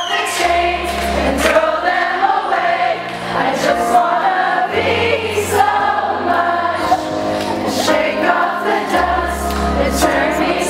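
Live synth-pop song: a woman singing over keyboard chords, with deep held bass notes that change every couple of seconds.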